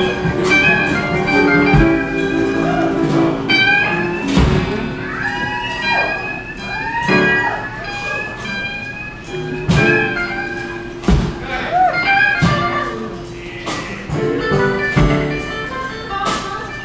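Live electric blues band playing: electric guitar lead with bent notes over bass guitar and drums.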